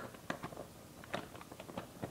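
Faint, scattered clicks and taps of plastic Lego bricks being handled on a Lego lockbox, about half a dozen small clicks with the clearest a little over a second in.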